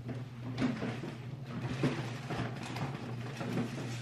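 Tissue paper rustling and crinkling in irregular bursts as someone rummages through a packed box, over a steady low hum.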